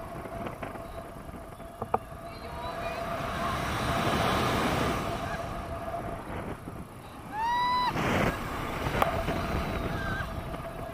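Wind rushing over an action camera's microphone in paraglider flight, swelling about halfway through. About three-quarters of the way in comes a short, high-pitched whoop from a voice that rises and then holds.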